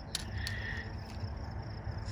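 Quiet outdoor background with a faint, steady insect trill of crickets, and a brief faint higher sound about half a second in.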